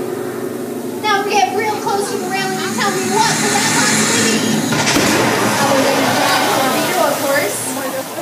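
Voices over a staged special-effects sequence. A loud rushing hiss builds from about three seconds in, with one sharp crack about halfway, as water spray pelts the tank around a mock PT boat.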